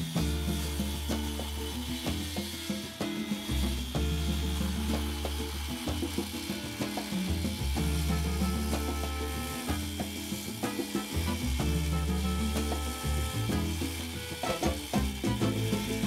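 A Makita circular saw running along an aluminium guide rail, ripping through a long timber board, with upbeat music playing over it.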